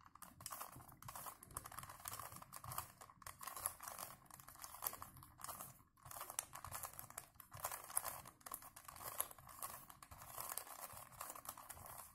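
A plastic 3x3 Rubik's cube being scrambled by hand: its faces turned in quick succession, making a faint, irregular stream of plastic clicks and rattles with a few brief pauses.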